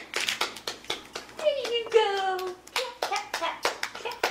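Hands clapping in quick, irregular claps, with a high, drawn-out voice falling in pitch about a second and a half in.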